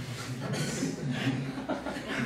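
Soft chuckling laughter, low and broken, at moderate level.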